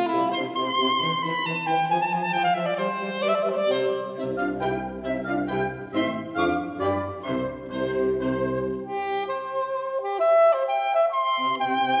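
Soprano saxophone playing a solo line with a chamber wind ensemble of flutes, trumpet and other winds, several pitched parts sounding together. Deep bass notes come in under the melody in the middle of the passage.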